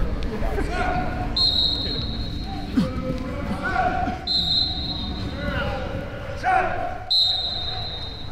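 Three blasts of a whistle, each a steady high tone about a second long, coming about every three seconds, over indistinct voices in a large hall during football warm-ups.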